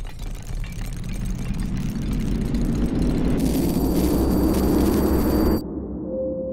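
Logo-reveal sound effect: a rumbling whoosh that swells steadily louder for about five seconds, joined near the end by a high shimmering ring, then cuts off suddenly into a quieter low rumble.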